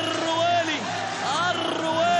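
A man's voice, excited football commentary, over the steady noise of a stadium crowd.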